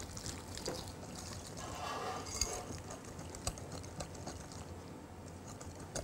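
A whisk stirring a wet pumpkin-puree mixture in a glass bowl: faint wet stirring with scattered light clicks of the whisk against the glass.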